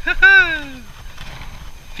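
A man's drawn-out vocal exclamation near the start, rising briefly and then falling in pitch over most of a second. It comes as he strains against a heavy fish on the line.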